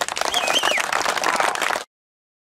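Audience clapping in applause, with a short high cheer among the claps. The sound cuts off abruptly near the end.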